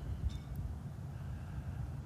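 Low, uneven rumble of light wind buffeting the microphone outdoors, with a faint hiss above it.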